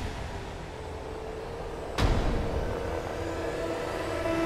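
Cinematic boom-hit sound effect about two seconds in, its deep rumbling tail dying away slowly over a low drone with faint held tones.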